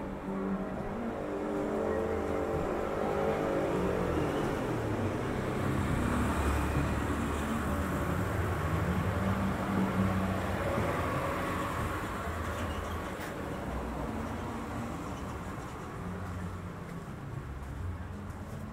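A motor vehicle's engine running in the street below, a low rumble that builds over the first few seconds, is loudest around the middle and fades toward the end.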